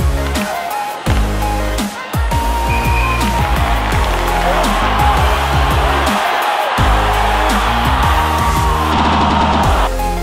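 Heavy-bass electronic background music, in a dubstep style. Over the second half a swelling noise builds up and cuts off suddenly near the end.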